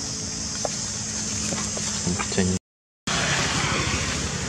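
Steady outdoor ambience: a continuous high hiss over a low rumble, with a few faint scattered sounds. The audio drops out completely for about half a second a little past halfway, then the ambience resumes slightly louder.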